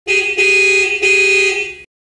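A car horn honking three times in quick succession at one steady pitch, the third honk the longest and fading out near the end.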